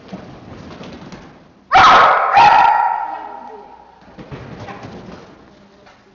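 A dog barking twice in quick succession about two seconds in, the barks echoing in the hall.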